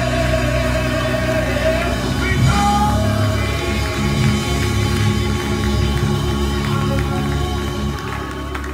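Live gospel music from a church band and choir: held keyboard chords and a steady low bass line under singing.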